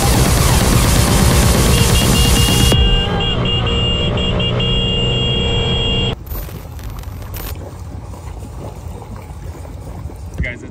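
Background music over moped riding noise. The sound changes abruptly about three seconds in and drops to a quieter, even road noise about six seconds in.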